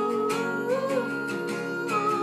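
Acoustic guitar strummed under a held, wordless sung note that rises slightly near the start and then stays level.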